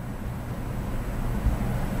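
A steady low background rumble with a brief low bump about one and a half seconds in.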